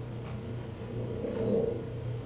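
Quiet room tone with a steady low hum, and a faint, indistinct sound about a second and a half in.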